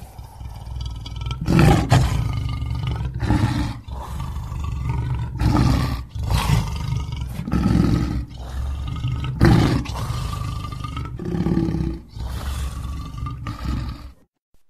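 Lion roaring: a loud run of deep calls, a fresh one every second or so, with the sound starting and stopping abruptly.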